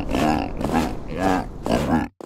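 Voice-acted cartoon seal making a quick run of short vocal cries, about four in two seconds, over a low background rumble.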